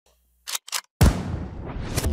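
Edited-in sound effects: two short sharp snaps, then a deep boom impact about a second in, followed by a rising whoosh that builds into the music.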